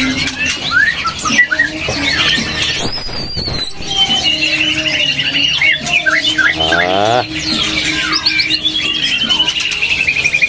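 Many caged songbirds singing at once: a busy mix of sharp whistles, chirps and glides. Near the end a long run of rapid repeated notes falls slowly in pitch.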